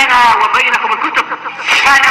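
A person's voice with its pitch rising and falling, but no words that a speech recogniser picks up.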